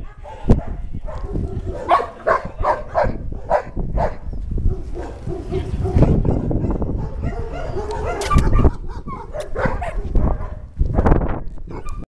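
Dogs barking, with a quick run of short barks about two seconds in and more barking near the end.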